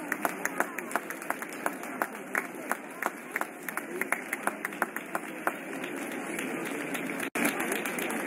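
Sparse audience applause with separate claps heard distinctly, several a second, dying away about five and a half seconds in.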